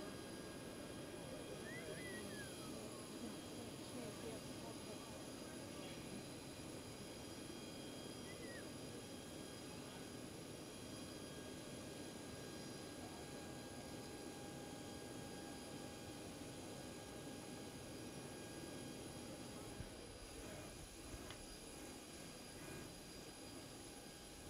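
Faint outdoor ambience: a steady low rumble, with two short high chirps about two seconds and eight seconds in.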